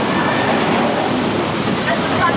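Vekoma mine-train roller coaster running along its steel track, heard from on board as a loud, steady rushing rumble of the wheels and the moving air.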